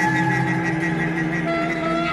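Band music in an instrumental stretch, with sustained held notes. A new, higher note enters about one and a half seconds in.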